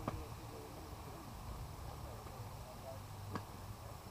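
Faint distant voices of players calling across an open softball field over a low background hum, with one short sharp knock about three and a half seconds in.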